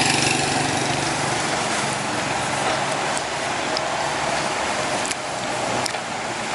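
A motorbike passing close by, its engine dying away as it moves off, over a steady hiss of street noise.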